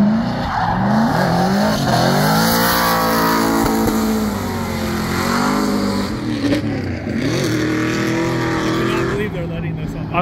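Drift car sliding through a corner, its engine revving up and falling back several times, with tyre squeal and hiss over it.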